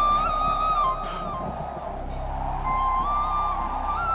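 Background score: a flute playing a slow melody of long held notes, with a short gap in the middle of the phrase.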